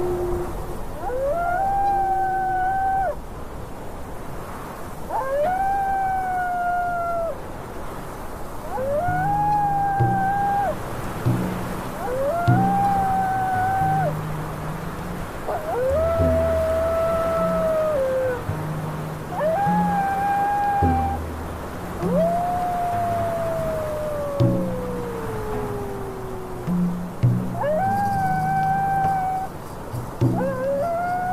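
Wolves howling over and over: long held howls that rise, hold and drop away, roughly every four seconds, with one long howl sliding steadily down in pitch about two-thirds of the way through. Under the howls, slow low instrumental notes play.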